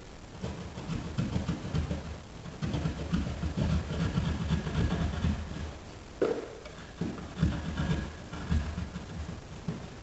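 Hand drywall saw cutting through sheetrock in irregular back-and-forth strokes, with a short pause about six seconds in, as the blade works around the edge of a buried electrical box.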